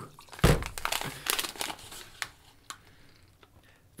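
Wrapping paper crinkling and tearing as a small gift is unwrapped by hand, in irregular crackles that thin out after about two seconds. Liquid is poured from a glass bottle into a glass, with a low thump about half a second in.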